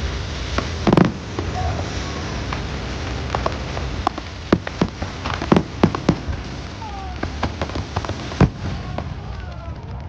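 Fireworks bursting overhead: a continuous crackling hiss broken by sharp bangs, one loud bang about a second in, a rapid cluster around the middle, another strong bang near the end. Crowd voices rise faintly in the last few seconds.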